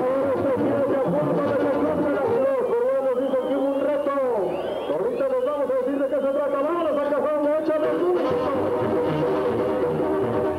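Brass band music playing, with a voice over it.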